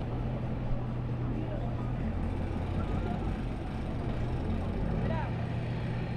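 A pickup truck's engine running steadily under throttle while its rear wheels spin on the wet boat ramp, trying to pull an empty trailer that is stuck on something and getting no traction.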